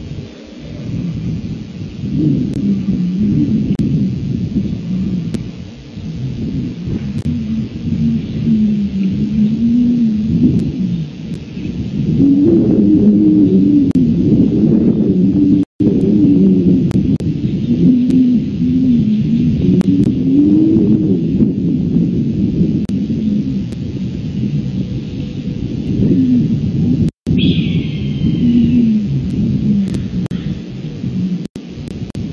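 Wolves howling in chorus: several long, wavering howls overlapping over a steady low rumble, with a short higher cry near the end. The sound drops out for an instant twice.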